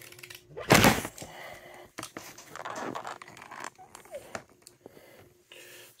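Cardboard shipping box being opened with a box cutter: a loud ripping burst about a second in, then quieter scraping and rustling of tape and cardboard with small clicks.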